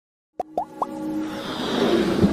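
Logo-intro sound effects: three quick rising bloops about a quarter second apart, starting about half a second in, followed by a swelling whoosh that builds toward the end.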